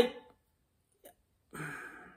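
A man's voice: the tail of a spoken word, a pause, then a short breathy vocal sound, a scoff-like exhale, in the last half second.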